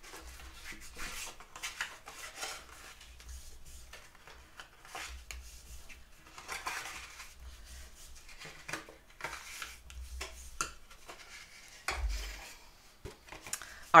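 Bone folder rubbed back and forth along score lines in cardstock, burnishing the folds flat: repeated faint rasping strokes of the tool over paper on a hard tabletop, with a soft low thump about twelve seconds in.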